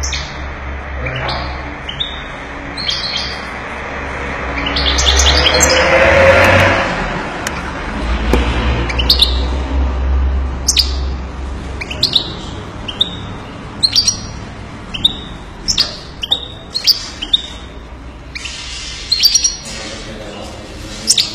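European goldfinch calling in its cage: a run of short, sharp chirps, about one every half second to second. A louder rushing noise comes and goes a few seconds in, over a low rumble.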